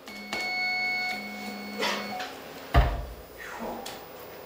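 A single electric guitar note held for about two seconds through the amplifier, then one sharp low thump about three seconds in.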